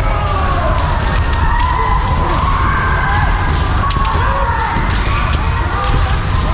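Kendo practitioners' kiai: several long, drawn-out shouts overlapping and sliding slowly in pitch. Sharp cracks of bamboo shinai strikes and foot stamps are scattered throughout.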